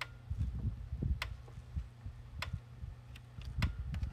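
PEL 609 electric fence charger clicking with each output pulse, four sharp clicks about 1.2 seconds apart. The steady pulsing shows the repaired unit firing again instead of staying on solid.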